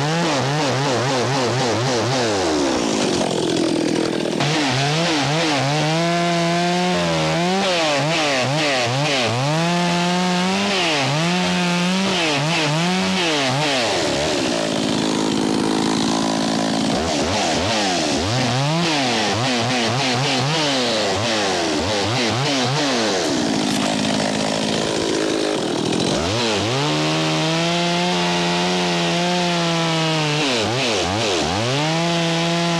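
Two-stroke chainsaw running throughout while cutting through pine wood. Its engine note repeatedly drops as the chain bites into the cut, then climbs back as the saw frees up and revs.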